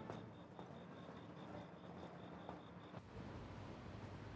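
Quiet background with faint insect chirping: an even, high-pitched pulse about five times a second that stops about three seconds in, leaving a faint low hum.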